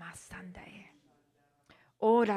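A woman's soft, whispered prayer into a microphone, trailing off about halfway through.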